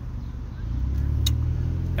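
Car engine and road noise heard from inside the cabin: a low rumble that grows louder about a second in, with two faint clicks.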